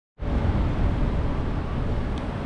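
City street traffic noise: a steady rumble of passing cars, starting abruptly just after the opening.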